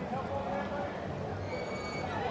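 People's voices from nearby outdoor dining tables and the sidewalk, over a steady low city rumble, with a faint steady high-pitched tone entering about three-quarters of the way through.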